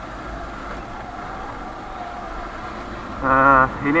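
Motorcycle engine running steadily while riding at low speed, with a low even rumble and noise. A man's voice comes in near the end.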